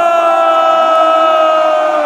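A single voice holds one long, slightly falling drawn-out note over stadium crowd noise.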